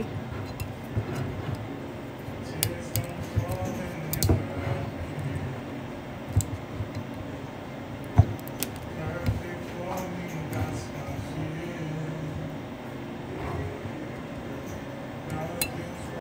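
Glass whisky bottle being opened by hand: scattered irregular clicks and light glass clinks as the cap and its seal are twisted and worked off.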